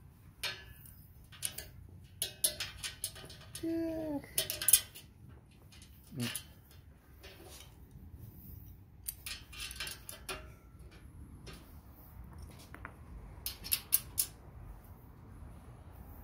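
Small metal clicks and rattles of a pedal hinge and its screw being fitted by hand against a perforated steel table bracket, in scattered bursts with pauses between.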